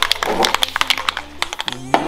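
Rust-Oleum glitter spray-paint can being shaken, its mixing ball rattling in a quick run of sharp clicks for about a second, then a voice starts speaking near the end.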